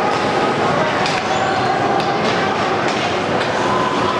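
Ice hockey rink sound: a steady, noisy wash of skates scraping the ice and indistinct spectator voices, with a few sharp stick clacks about one and two seconds in.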